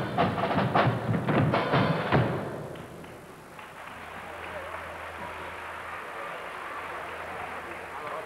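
Carnival murga's percussion playing loud, rhythmic strikes for about two seconds, then dropping away into a steady, quieter crowd noise from the theatre audience.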